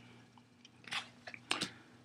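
Trading cards being handled, a few brief crinkles and a couple of sharp clicks about a second in and again near the end.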